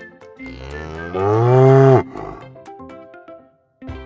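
A cow mooing once, a long call that rises in pitch and then falls before it cuts off sharply about two seconds in, over light plucked background music.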